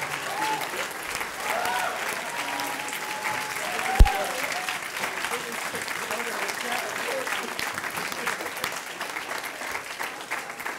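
A crowd applauding, with voices calling out over the clapping, which thins slightly toward the end. A single sharp thump about four seconds in is the loudest moment.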